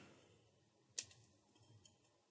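Near silence with a single sharp click of hard plastic about a second in, then a few very faint ticks, from hands handling the Nerf Barricade blaster's plastic shell.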